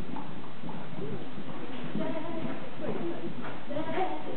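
Hoofbeats of a grey Welsh pony trotting on arena footing, with indistinct voices talking over them, the voices clearest in the second half.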